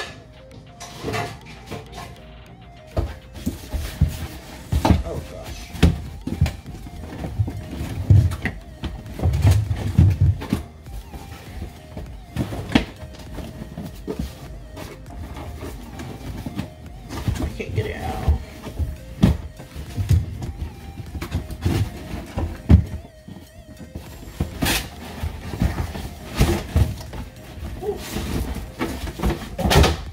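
A cardboard box holding a dinnerware set being opened and handled: irregular knocks, thuds and cardboard scraping, with background music underneath.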